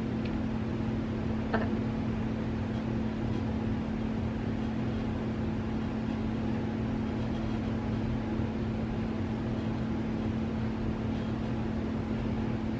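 Steady low background hum with a constant tone and no change throughout; a faint click about one and a half seconds in.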